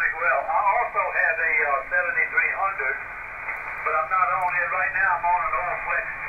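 Icom IC-7300 transceiver's speaker playing a voice received on single-sideband (upper sideband, 14.235 MHz in the 20 m band): thin, narrow speech with no low end and nothing above about 2.7 kHz, with a short lull about three seconds in.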